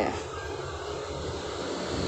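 A steady low mechanical hum in the background, with a short spoken word at the very start.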